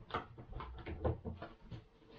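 Irregular knocks and clatter of a kitchen cupboard and the things in it being handled, with several dull thuds, the loudest about a second in.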